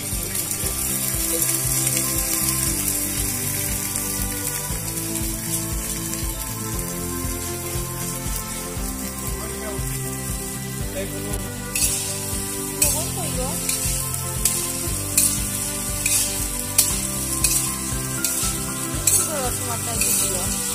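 Chopped onion, carrot, tomato and chilli land in hot oil in a large wok and sizzle at once, a steady loud frying hiss. From about halfway through, a metal spatula scrapes and knocks against the wok in regular strokes as the vegetables are stirred.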